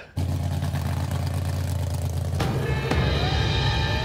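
Big-block Chevrolet V8 mega truck engine running with a steady low rumble, growing louder about halfway through.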